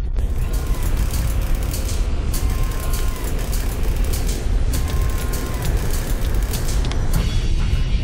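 Steady wind and boat noise on an open fishing-boat deck, with a low rumble and scattered sharp clicks, while an angler jigs a heavy rod. Guitar music comes back in near the end.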